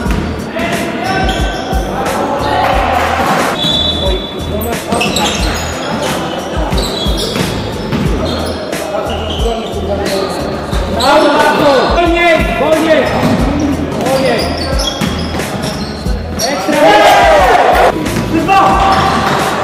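Sounds of a basketball game in a large sports hall: a basketball bouncing on the wooden court with many short impacts, players' voices calling out, all echoing in the hall.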